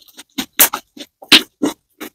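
Thick, glossy yellow slime squeezed and folded between the fingers, giving a quick uneven series of short wet squelches and air-pocket pops, about half a dozen, the loudest a little past the middle.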